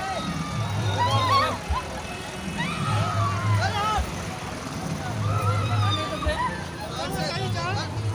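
A loud DJ sound system playing a song: a sung vocal line over a heavy bass pattern that repeats about every two seconds.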